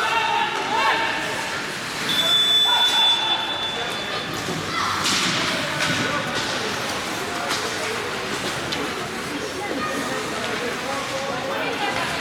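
Ice hockey game play in an indoor rink: sticks and puck knocking and thudding, with voices of players and spectators. There is a brief high steady tone about two seconds in.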